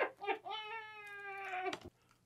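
A person's voice making a drawn-out, high-pitched wordless sound: one held note that falls slightly in pitch for just over a second and then cuts off suddenly, after a short vocal sound at the start.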